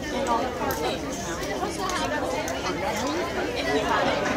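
Indistinct chatter of several people talking over one another, with no single clear voice.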